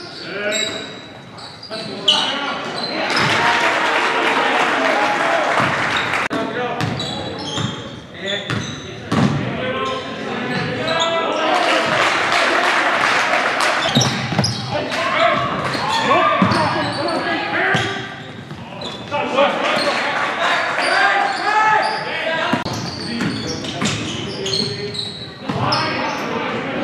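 Live basketball game sound in a gym: a basketball bouncing on the hardwood floor with sharp repeated thuds, under indistinct shouting and chatter from players and spectators, echoing in the hall.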